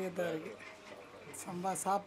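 A voice speaking in short phrases: original untranslated speech from the interview, heard briefly near the start and again near the end, with a quieter gap in the middle.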